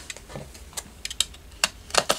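A handful of sharp, irregular clicks and taps from a snap-off utility knife being handled to slit open the plastic wrap of a paper pad.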